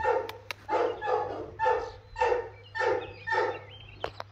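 A dog barking in a steady run, about two barks a second, around seven barks in all.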